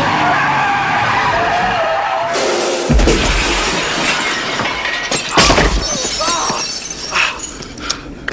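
Film action sound effects over music: a truck's tyres skidding, then a windshield shattering about three seconds in, with glass crashing down. Heavy impacts follow, the loudest about five and a half seconds in.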